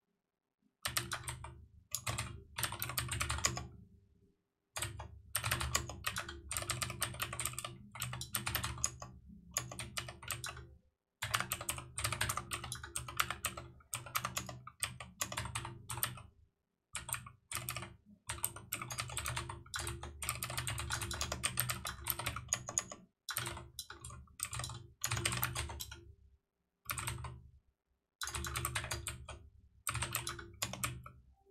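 Typing on a computer keyboard, rapid key clicks in bursts of a few seconds with brief pauses between them.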